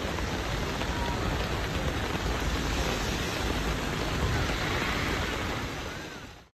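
Heavy rain falling steadily, a dense, even hiss.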